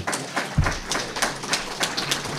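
Scattered clapping from a small audience: separate, irregular hand claps. A low thump comes about half a second in.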